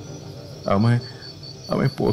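Crickets chirping in a rapid, even pulse, a background sound effect.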